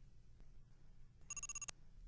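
A short ringing-bell sound effect, a rapid trill of about eight quick strokes lasting under half a second, coming after a near-silent second and marking the change to the next picture card.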